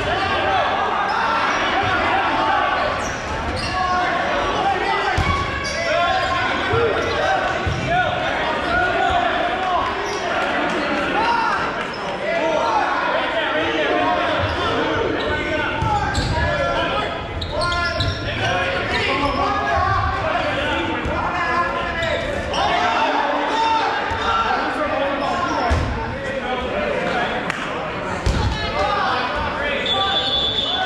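Dodgeballs thudding and bouncing on a hardwood gym floor, several times, under the continuous overlapping shouts and chatter of players, all echoing in a large gym.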